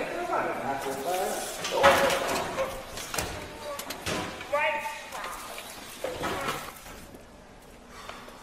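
A heavy steel drum being handled by hand: a few knocks and thuds, the loudest about two seconds in and another about four seconds in, amid men's wordless voices.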